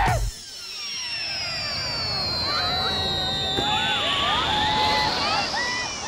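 Film sound effect of a long whistling glide that falls steadily in pitch and then rises near the end, as a character slides down a rope, over a crowd's scattered shouts and cheers. Loud music cuts off just after the start.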